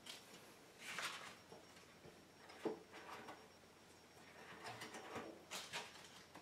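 Faint rustles and soft knocks of items being handled in a hard-shell carrying case, in a few short bursts about a second in, near the middle, and near the end.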